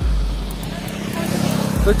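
A motor vehicle passing close by on the road, its noise swelling about halfway through over a steady low hum.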